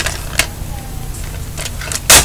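A plastic DVD case being handled, giving two sharp clicks in the first half second and then faint ticks, over a steady low hum.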